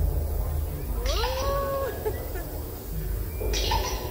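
A rider's voice: a rising, drawn-out whine-like "oooh" held for under a second, over a steady low rumble, with two short hisses.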